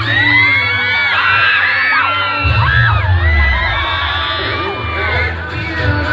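A crowd of spectators screaming and cheering over loud dance music with a heavy bass; the bass drops away at first and comes back strongly about two and a half seconds in.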